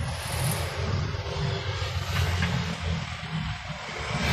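Street traffic: a steady wash of vehicle engine and road noise, with a low engine hum underneath.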